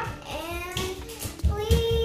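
A young girl's voice in a sing-song, singing manner, holding one steady note about one and a half seconds in.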